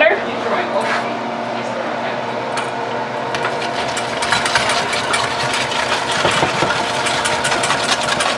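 Wire whisk beating a melted-butter lemon pepper sauce in a stainless steel mixing bowl: rapid, rhythmic clicking and scraping of metal tines against the metal bowl, picking up about three seconds in.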